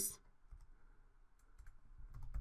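Faint computer keyboard clicks: a few scattered keystrokes, coming closer together near the end.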